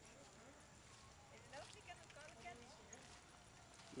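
Near silence: faint, distant voices of people talking over a low background hum.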